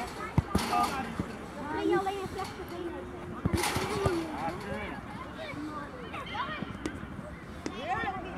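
Several voices of players and onlookers calling out across a football pitch, with a few sharp knocks of the ball being kicked, the strongest about half a second in.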